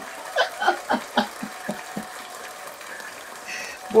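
Soft laughter: a few short chuckles and breaths in the first second and a half, then quieter before a short breathy sound near the end.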